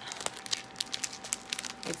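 Clear plastic packaging around a set of makeup brushes crinkling as it is handled, a quick irregular run of small crackles.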